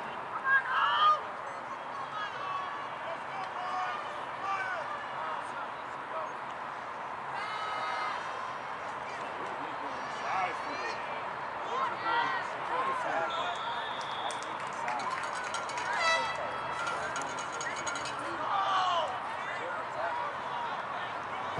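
Scattered shouts and calls from football players and coaches on the sideline during a play. A single short referee's whistle sounds about two-thirds of the way through, ending the play.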